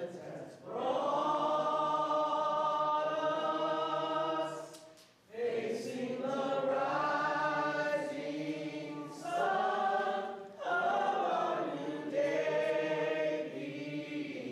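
Several voices singing long held notes in harmony, like a choir, with no beat. The phrases break briefly about five seconds in and again near ten seconds.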